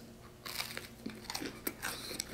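A person biting into and chewing a cornbread waffle close to the microphone: after a near-silent start, a sparse scatter of faint crunches and small clicks.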